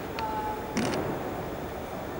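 Room tone of a large hall in a pause between speakers, with a brief short tone and a short sharp sound within the first second.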